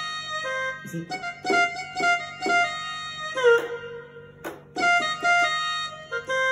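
Yamaha PSR-E473 electronic keyboard playing chords and a melody line in F major, struck about twice a second, with a short lull a little before the four-second mark before the playing picks up again.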